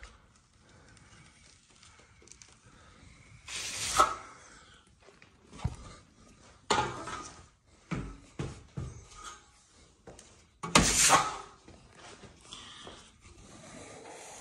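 A 14-inch steel trowel dragged across a wall through wet joint compound while skim-coating over texture: about six separate scraping strokes, the loudest about four seconds in and near eleven seconds.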